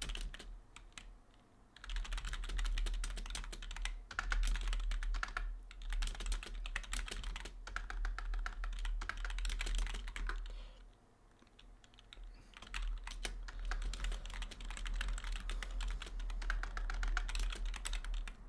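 Fast typing on a computer keyboard: continuous runs of key clicks, broken by two short pauses, one near the start and one about two-thirds of the way through.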